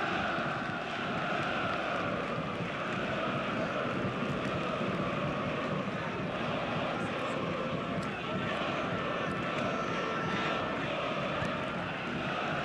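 Steady stadium ambience at a football match, an even wash of crowd-like noise with players' voices mixed in and a few faint knocks.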